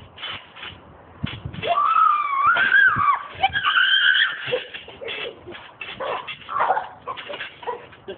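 A boy's long, high-pitched cry about one and a half seconds in, followed by a second shorter high cry, then scattered knocks and thuds from bodies landing and scrambling on the trampoline mat.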